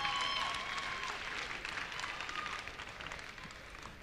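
Audience applauding, fading gradually over a few seconds.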